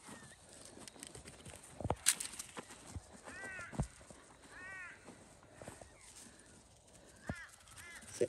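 Two faint, drawn-out caws like a crow's, a little over a second apart, with a shorter call near the end. A few soft knocks and rustles of handling are scattered through the quiet.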